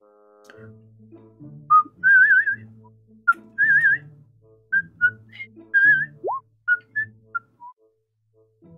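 A person whistling a short tune in several phrases, the notes wavering in pitch, with one quick upward slide about six seconds in. Quiet background music with low bass notes plays underneath.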